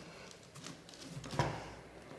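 Faint handling noises of a camera strap's safety connector being threaded through a camera's strap lug by hand, with a light click about one and a half seconds in.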